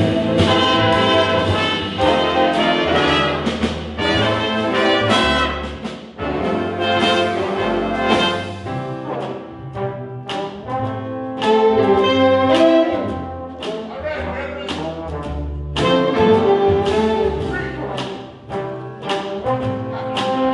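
Jazz big band playing live: saxophone section, trumpets and trombones over piano, guitar, upright bass and drums. The horns punch out sharp ensemble accents, and the volume swells and drops back several times.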